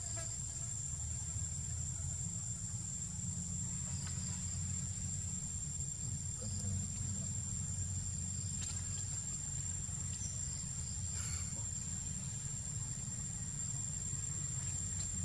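Steady high-pitched drone of insects in the forest, over a constant low rumble.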